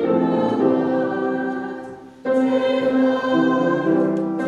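A congregation singing a hymn together in held notes, pausing briefly about halfway through before the next line.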